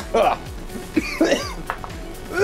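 A man laughing and coughing in two short bursts, reacting to strong oven cleaner fumes.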